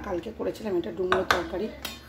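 Stainless steel bowls and plates clinking and tapping as food is served, with a few sharp clinks a little past halfway and one near the end. A voice talks over the clinks.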